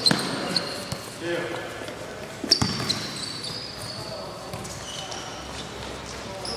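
A futsal ball struck and bouncing on a hard indoor court, two sharp knocks about a tenth of a second and two and a half seconds in, ringing in a large hall. Short high shoe squeaks and players' shouts come between them.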